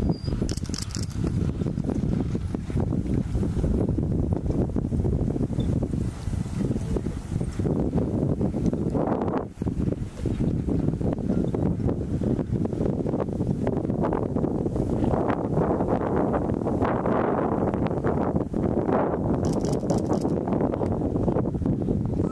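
Wind buffeting the microphone: a loud, uneven rumble that never lets up.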